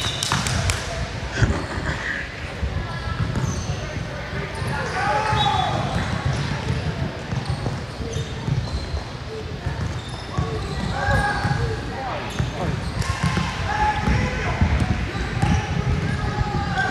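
Basketball game sounds: a ball bouncing on an indoor court, with players and spectators calling out indistinctly in the background.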